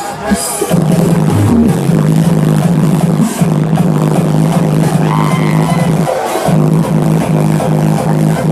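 Loud hardstyle electronic dance music from a party truck's sound system, with a held deep bass line that breaks off briefly twice, just after the start and about six seconds in.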